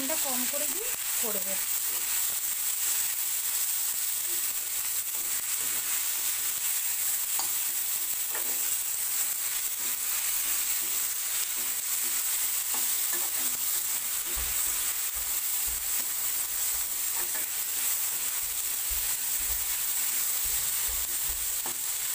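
Potato sticks, onion and tomato frying in oil in a kadai, sizzling steadily while a metal spatula stirs and scrapes them, with small clicks of the spatula against the pan. A few low thumps come in the second half.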